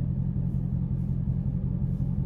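Dodge Challenger Scat Pack's 6.4-litre 392 HEMI V8 idling steadily, a low even rumble heard from inside the cabin.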